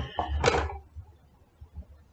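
Objects being handled and set down on a tabletop: a couple of short knocks and rubs in the first second.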